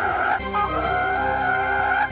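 A cartoon porg screeching, one long high-pitched call that steadies onto a single held pitch about half a second in.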